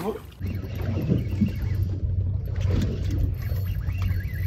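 Boat's outboard engines running with a steady low hum, which starts about half a second in, under faint voices.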